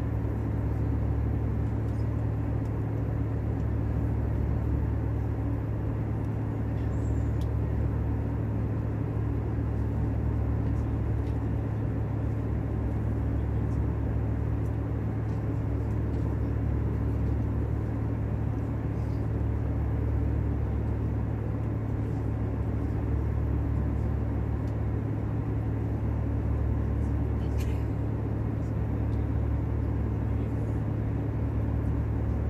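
Airbus A320 cabin noise in flight: a steady low drone of engines and airflow with a constant hum, and a faint click near the end.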